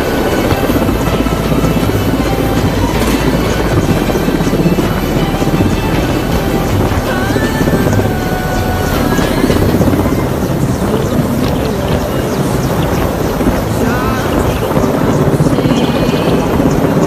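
Helicopter hovering low overhead, its rotors running steadily, with music mixed in.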